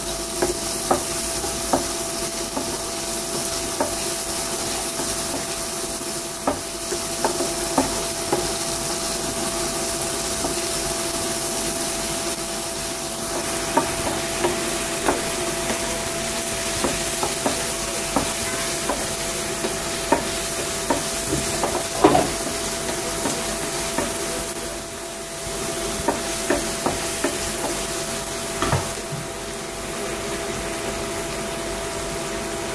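Chopped onions and curry leaves sizzling in oil in a nonstick frying pan while a wooden spatula stirs them, with frequent taps and scrapes of the spatula against the pan and one louder knock about two-thirds of the way through. A steady hum runs underneath.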